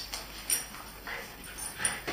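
Dogs playing tug with a toy: short whines and yips, with two sharp clicks, one about half a second in and one near the end.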